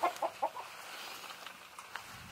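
Hens inside a coop clucking a few short times in the first half-second, then a faint steady hiss of light rain.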